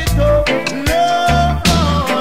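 Reggae record playing: deep, booming bass notes and a steady beat under a sustained melody line.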